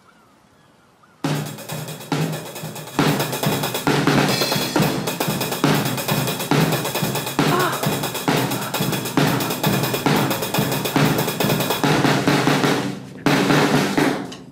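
Drum kit played loudly: bass drum, snare and cymbals in a fast, busy beat that starts suddenly about a second in, breaks off briefly near the end, then starts again.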